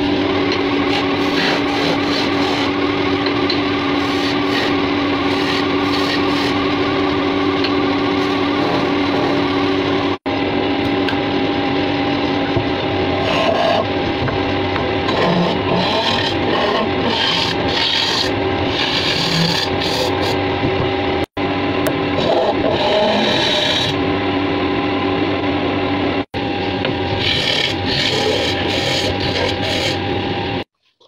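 Wood lathe running with a steady hum while a turning tool scrapes and cuts into the end of a spinning wooden blank, hollowing it out. The sound drops out briefly three times.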